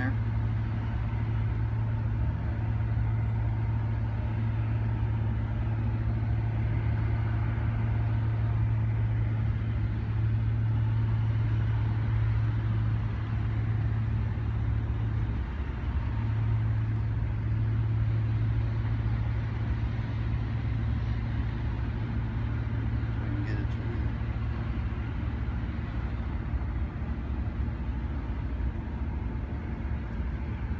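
A steady low droning hum with a haze of noise over it, holding level throughout and dipping briefly about halfway through.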